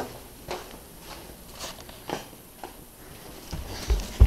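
Footsteps on an indoor floor: a few light, spaced steps, with a low rumble of camera handling building near the end.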